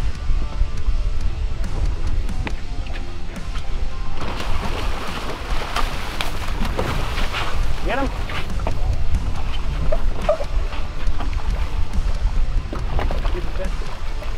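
Background music over wind noise on the microphone and water sloshing against a boat hull, a steady low rumble throughout; from about four seconds in, voices call out now and then.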